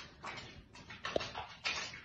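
Soapy hands rubbing together under handwashing, a run of quick, uneven wet swishes about three or four a second, with a brief squeak a little over a second in.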